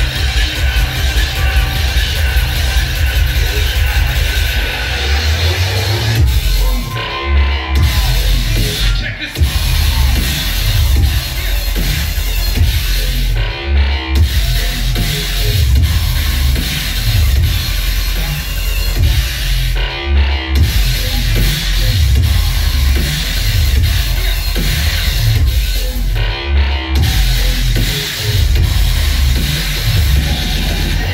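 Loud, bass-heavy electronic music from a live DJ set played through a venue's sound system. The highs drop out briefly about every six seconds, marking the phrases of the track.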